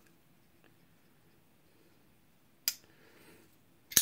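Rough Ryder liner-lock flipper knife with a bearing pivot being flicked: two sharp metal clicks of the blade snapping against its stop, a little over a second apart, the second louder.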